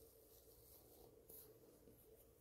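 Near silence: room tone with a faint steady hum and a brief faint rustle a little past halfway.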